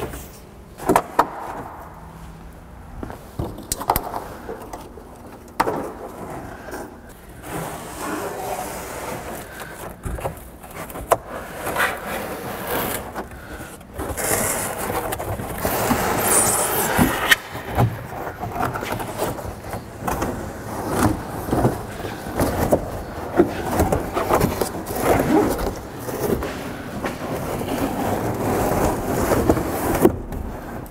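The minivan's cardboard-backed headliner board being worked down and out of the van by hand: irregular rubbing and scraping of the board against the roof and interior trim, with scattered clicks and knocks. It grows louder and busier about halfway through, as the board comes out past the rear hatch.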